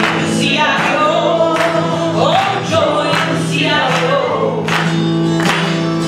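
A woman singing a folk song live while strumming an acoustic guitar, with the sung melody over a steady rhythm of chords.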